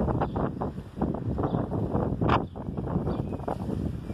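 Wind buffeting a handheld phone's microphone in irregular gusts, a low rumbling rush with one stronger gust about halfway through.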